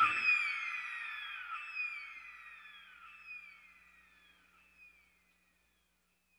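A high, falling whistle-like cry repeating as an echo about every second and a half, each repeat fainter than the last, dying away about four seconds in.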